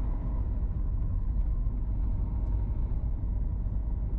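Car running along a lane, heard from inside the cabin through a dashboard-mounted camera: a steady low rumble of engine and road noise.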